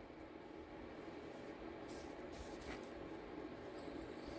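Quiet room tone: a faint steady low hum and hiss, with a couple of faint soft ticks near the middle.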